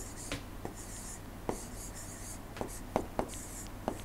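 Stylus writing on a tablet or pen display: a few short scratchy strokes and light taps of the pen tip. A steady low hum runs beneath.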